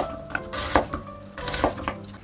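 Chef's knife slicing an onion into wedges on a wooden cutting board: several knocks of the blade against the board, unevenly spaced.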